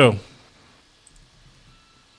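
The last of a man's words into a studio microphone, then a near-quiet pause on the line with a couple of faint clicks about a second in and a faint thin steady tone near the end.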